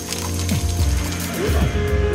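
Mechanical clicking and whirring from a CNC milling cutter working metal under coolant, over steady low background music with repeated falling sweeps.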